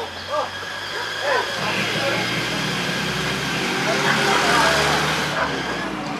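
A motor vehicle's engine running, a steady rumble and hiss that swells from about a second and a half in and cuts off shortly before the end, with faint talk underneath at first.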